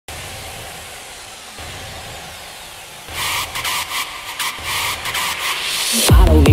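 Intro of an electronic dance remix: a hissing noise sweep with falling whooshes over a soft low pulse, then from about three seconds a rhythmically chopped noise build that grows louder, leading into the drop.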